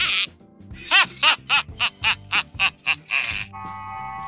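Orko, the cartoon character, laughing in a high-pitched, squeaky voice: a quick run of about ten short giggles, about four a second, over background music. Near the end a steady held electronic chord sounds as a transition sting.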